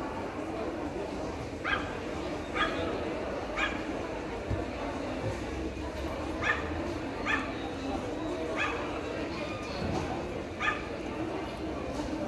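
A dog yipping in short, high calls, seven times with irregular gaps of about a second, over a steady low background murmur.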